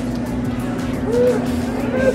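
A steady low hum with faint background music and its even, ticking beat, and a brief far-off voice a little over a second in.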